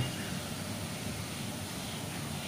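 Steady background noise with no distinct events: a low, even hiss and rumble of room tone.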